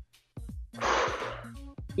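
A woman's breath, one audible exhale a little under a second in, over quiet background music.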